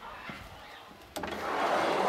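A large wooden drawer pulled open on its metal drawer slides: a click a little past halfway, then a rolling, rushing slide that grows louder toward the end.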